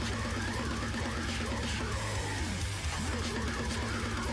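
Slamming brutal death metal playing: distorted guitars over a dense, heavy low end, steady and loud throughout.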